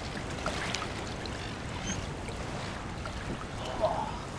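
Steady wind rumble on the microphone over small waves washing against a rocky shore.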